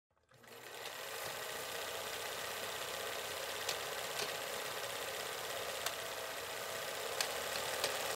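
Old film-projector sound effect: a steady mechanical whirr with hiss, fading in over the first second, broken by a few scattered crackling clicks like dust on old film.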